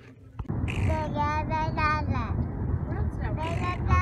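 A toddler babbling and vocalising in a high voice without clear words, over the low rumble of a car driving along the road.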